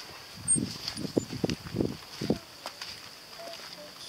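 Footsteps on a grassy dirt path: a string of uneven soft steps, a few each second, thinning out after about two and a half seconds, over a steady faint high hiss.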